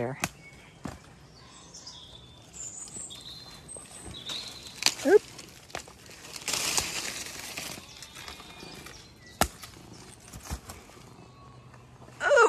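Footsteps and rustling through woodland undergrowth, with faint bird chirps between about two and four seconds in. About five seconds in comes a short pitched vocal sound, followed by a burst of rustling among leaves and a sharp click near the end.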